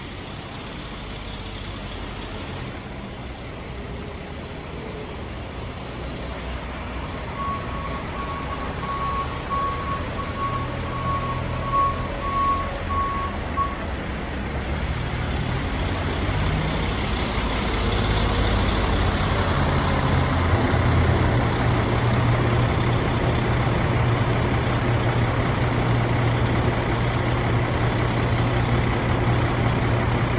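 Telehandler's diesel engine running as it carries a stack of large square hay bales, growing louder as it comes close in the second half. A backup alarm beeps for about six seconds, starting about eight seconds in.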